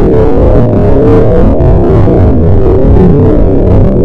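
Harsh noise music built from digitally processed bird calls: a loud, dense, distorted wall of sound with wavering pitches, the birds no longer recognisable as such.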